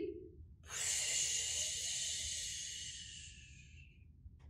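A woman making a long hissing spray sound with her mouth, acting an elephant blowing water up out of its trunk. The hiss starts about a second in and fades out over about three seconds.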